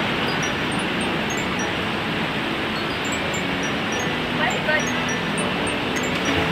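Fast whitewater river rapids rushing steadily. A brief voice call is heard about four and a half seconds in.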